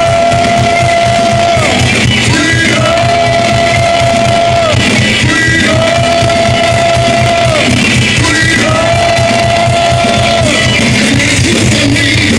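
Heavy metal band playing live, with four long held sung notes, each about two seconds and falling away at its end, repeating about every three seconds over drums and distorted guitars.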